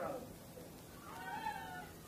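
A faint, drawn-out, high-pitched voice-like cry about a second in, rising then falling.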